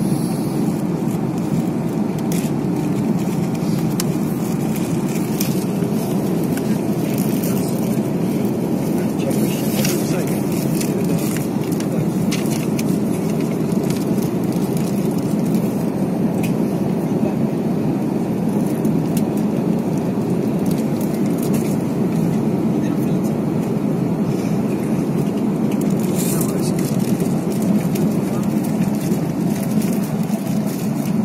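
Steady airliner cabin noise during descent: an even, low rush of engines and airflow.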